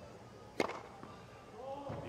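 A tennis serve: the racket strikes the ball once with a sharp crack about half a second in, the serve that goes for an ace on match point. Voices start to rise near the end.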